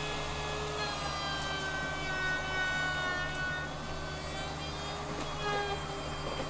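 Compact handheld trim router running, cutting the edges of a pine paddle handle: a steady motor whine over a low hum, its pitch sagging and recovering as the bit takes wood.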